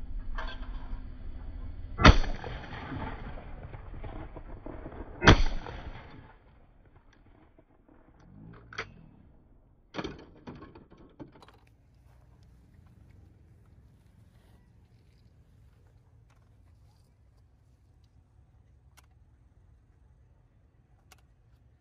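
Two shotgun shots at clay targets about three seconds apart, each with a ringing tail. A few lighter clacks follow around nine to eleven seconds in.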